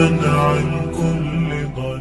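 Closing held notes of an Arabic nasheed: sustained voices over a low drone, the lower note shifting about a second in, the whole slowly fading.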